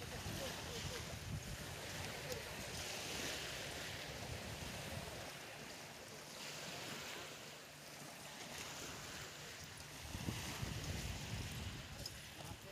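Small waves washing onto a pebble shore in slow surges every few seconds, with wind rumbling on the microphone.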